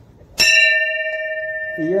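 A temple bell struck once about half a second in, ringing on with a clear, steady tone that slowly dies away.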